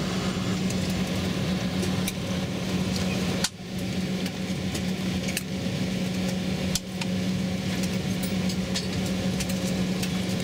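Steady cabin drone of a jet airliner taxiing with its engines at idle, a constant low hum under a broad rush of air and engine noise. The sound drops out briefly twice.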